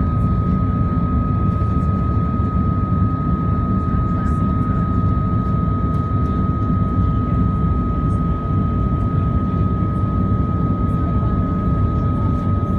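Airliner cabin noise during the climb: a steady, loud low rumble of jet engines and airflow, with a thin steady whine running through it.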